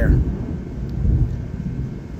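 A low, steady rumble close to the microphone, louder than the room around it, with no words.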